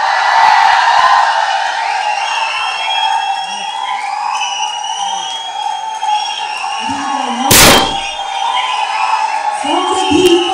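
A crowd cheering and shouting with many voices at once, loud throughout. A single loud half-second burst of noise comes about seven and a half seconds in.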